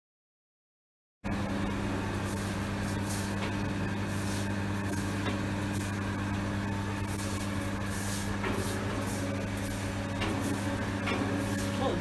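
Silence for about the first second, then a steady electric motor hum, most likely the pump running the well-water filter system, with a hiss over it.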